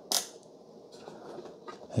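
Mr. Coffee burr grinder's grind-selector knob being turned by hand, clicking through its detents: one sharp click just after the start, then a few faint clicks.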